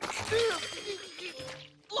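Cartoon sound effect of juice squirting and splattering from a squeezed juice box. The noisy splash is loudest at the start and fades over about a second and a half, with a brief wordless voice sound and background music under it.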